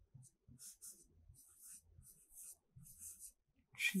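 Stylus writing on an interactive whiteboard screen: a series of short, faint scratchy strokes, one after another, as words are written. A woman's voice begins right at the end.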